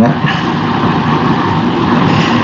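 Steady, loud rushing noise with no clear pitch, like hiss or static on an open line.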